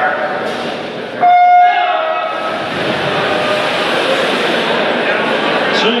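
Electronic swim-start signal: a single steady beep of about a second, starting about a second in. Before and after it, crowd noise fills a large pool hall.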